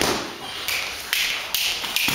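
Boxing gloves landing during sparring: a few sharp slaps and thuds of punches on gloves and headgear, spread through the two seconds.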